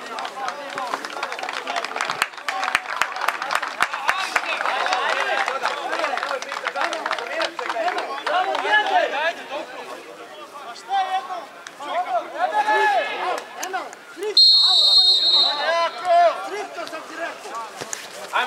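Players and spectators shouting and calling out during a football match, and a referee's whistle blown once, a steady shrill tone of about a second, a little past the middle.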